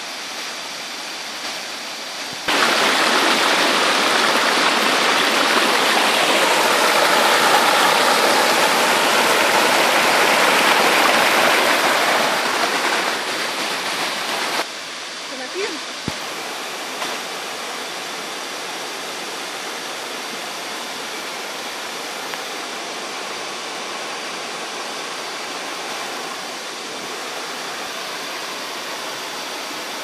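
Water rushing and splashing over the limestone tiers of a waterfall, a steady noise. It turns much louder suddenly about two seconds in and drops back just as suddenly near the middle.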